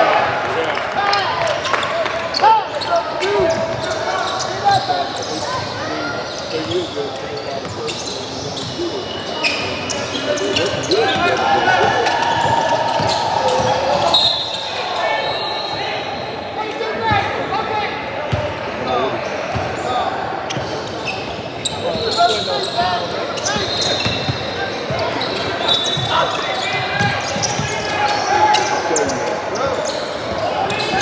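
Basketball game in an echoing gym: the ball bouncing on the hardwood court, sneakers squeaking, and players and onlookers calling out.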